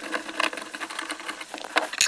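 Light, irregular clicking and scraping of a screwdriver backing a self-tapping screw out of the plastic instrument-cluster cover of a Lada Niva, heard faintly.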